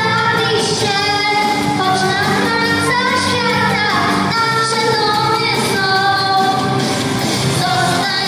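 A young girl singing a song into a microphone over musical accompaniment, holding and gliding between notes.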